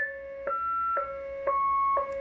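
Stryker SR-955HP CB radio playing a slowed-down VC-200-style roger beep: a short melody of clean electronic tones, about two notes a second, alternating a low note with a higher note that changes each time.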